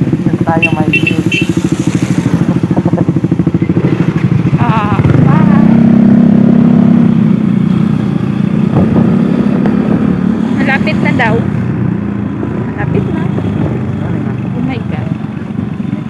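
Motorcycle engine idling with an even low beat, then pulling away about five seconds in, rising in pitch and settling into steady running. Short bursts of laughter and voices come over it.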